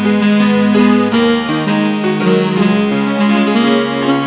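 Instrumental passage of a slow song with no singing: sustained chords and notes that change every second or so.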